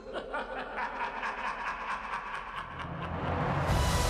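A person snickering, a quick run of short laughs about five a second, fading after about two and a half seconds. Near the end, film-trailer music comes in as a low rumble and swells up loudly.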